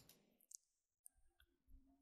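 Near silence, broken by a single faint computer mouse click about half a second in.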